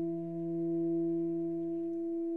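Two tenor saxophones holding long, steady, pure-sounding notes together, one higher and one lower; the lower note grows weaker near the end.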